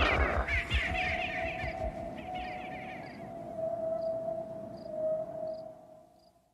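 Cartoon birds squawking in quick repeated calls that fade away over the first three seconds, under a long held musical note that fades out at the end.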